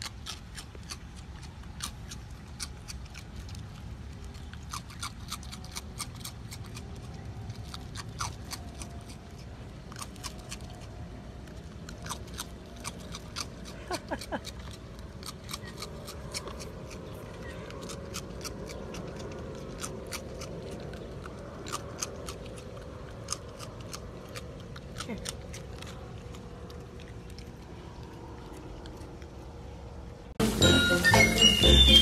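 A raccoon eating crunchy ring cereal, with many sharp, irregular crisp cracks as it bites and chews.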